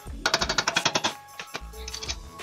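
Impact wrench rattling in a rapid burst of just under a second as a suspension fastener is run down, with a second short burst near the end. Background music plays underneath.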